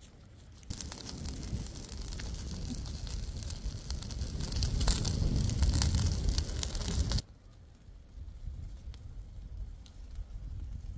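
Chicken pieces sizzling on a wire grill grate over hot campfire coals, with crackling from the embers, growing louder toward the middle and cutting off suddenly about seven seconds in.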